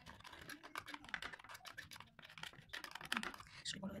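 A small tool scraping pressed eyebrow powder out of a makeup palette pan and tapping it into a bowl: a quick, irregular run of light clicks and scratches.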